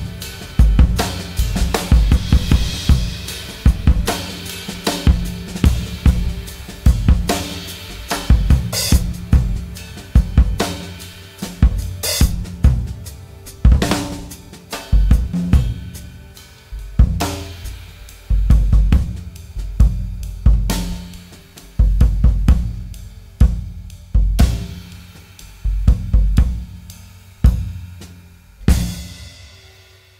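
Solo jazz drum kit playing freely, with snare, bass drum, hi-hat and cymbals in dense, irregular strokes. Toward the end the playing thins to single hits about a second apart, each left to ring out, and the last one fades just before the end.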